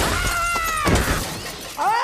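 A heavy crash of ice smashing and shattering, with shards scattering, as the music cuts off. A character's cry falls in pitch over the crash, and another short cry starts near the end.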